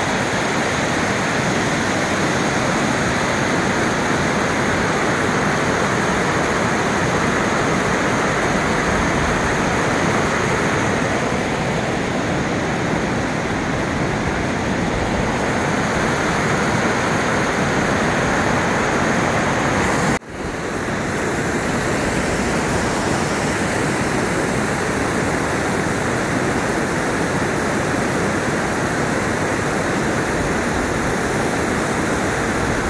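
Waterfall water rushing and churning over a wide granite ledge in a steady, loud roar. The sound drops out for a moment about two-thirds of the way through, then returns.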